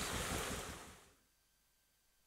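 Water hissing as it sprays from leaks in an irrigation hose, fading out within the first second, then silence.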